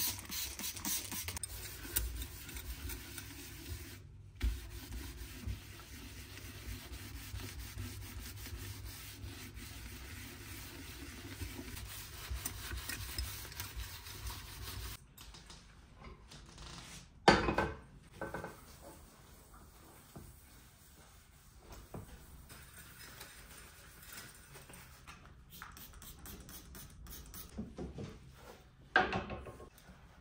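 Cleaning with a spray bottle and a sponge: a quick run of trigger-spray squirts into a stainless-steel sink, then a sponge rubbing and scraping over foamy cleaner on the sink and the enamel and metal of a gas hob. Two short sharp knocks come later.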